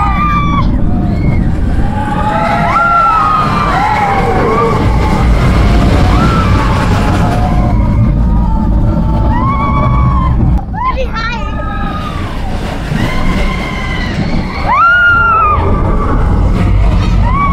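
Expedition Everest roller coaster train running, with a steady wind and track rumble on the microphone. Riders yell and scream over it again and again in short, high-pitched rising-and-falling cries.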